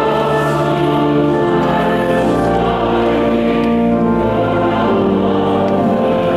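Church choir singing in long held chords.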